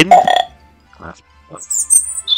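Faint background music under short sound effects: a rough sound in the first half-second, two faint short sounds in the middle, and a high squeaky sound near the end.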